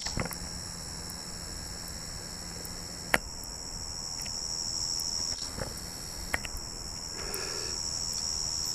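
A steady high-pitched chorus of insects, like crickets. A sharp click comes about three seconds in, with a couple of softer ones later.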